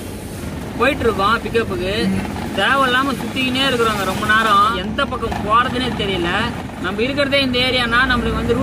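A man talking inside the cab of a Tata Ace mini-truck, his voice the loudest sound, over the steady hum of the truck running on the road.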